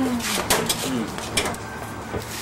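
A few sharp clicks and a quick double knock from a car's door and hood latch being worked to open the hood, with a short voice at the start.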